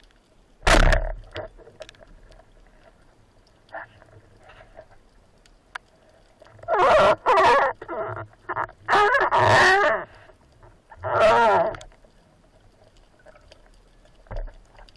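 Underwater, a wooden band-powered speargun fires with one sharp, loud crack about a second in. Later come three bubbling, gurgling bursts of about a second each.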